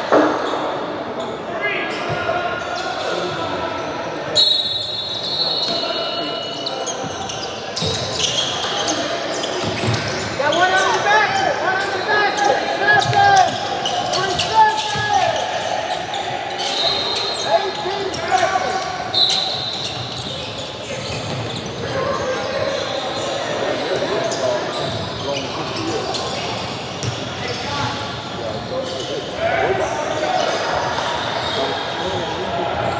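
Basketball game play in a large gym: a ball bouncing on the hardwood court, sneakers squeaking, and players and onlookers calling out, with voices loudest in the middle, all echoing in the hall.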